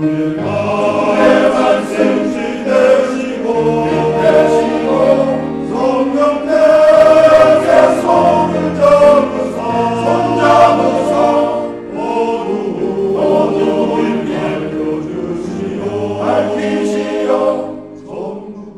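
Men's choir singing in several-part harmony with low bass parts, swelling and easing in loudness, with a brief dip about twelve seconds in.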